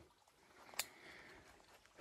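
Near silence outdoors, with one faint click about halfway through.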